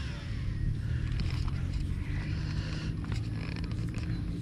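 Shimano SLX MGL baitcasting reel paying out line at the end of a cast, its spinning spool whirring and falling in pitch over the first half-second, over a steady low rumble.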